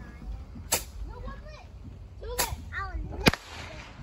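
Consumer fireworks popping: three sharp cracks, the last, about three seconds in, the loudest.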